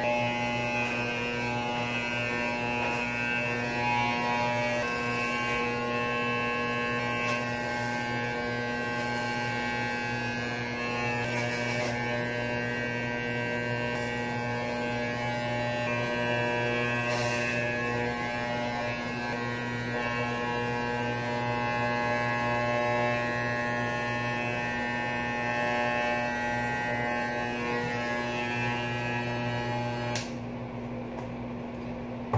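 Corded electric hair clippers with a grade 1 guard running steadily, a mains-hum buzz whose tone shifts slightly as the blades pass through hair on the head. The clippers are switched off at the very end.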